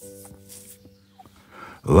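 Soft background music: a held chord of several steady notes. A narrating voice comes in right at the end.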